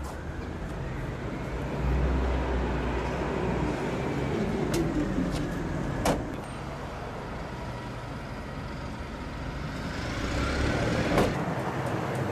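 Road traffic passing, its engine and tyre sound rising and falling twice. The van's rear liftgate is pushed shut with a thump about six seconds in, with a lighter knock shortly before it and another thump near the end.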